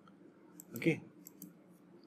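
A few faint, scattered clicks of a computer mouse, with a single spoken "okay" a little under a second in.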